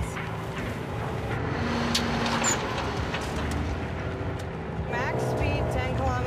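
Semi truck's engine running steadily under road and wind noise, with a few sharp clicks about two seconds in. A voice starts near the end.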